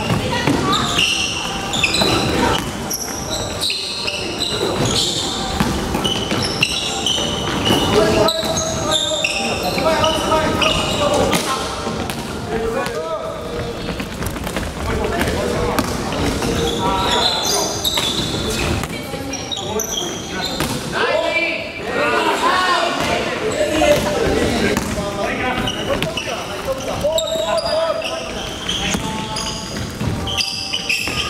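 A basketball bouncing on a wooden gym floor during a game, with sneakers squeaking in short high-pitched chirps and players calling out. All of it echoes around a large gym hall.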